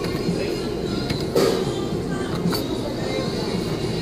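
Claw machine lowering its claw into a pile of plush toys, with a single clunk about a second and a half in, over arcade background music and a steady low machine hum.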